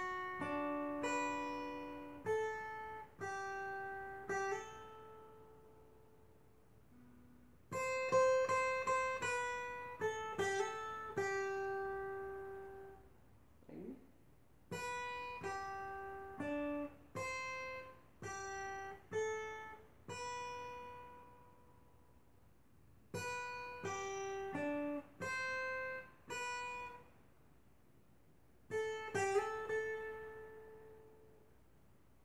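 Acoustic guitar playing a single-note melodic solo in G major, plucked notes ringing out in four phrases with short pauses between them.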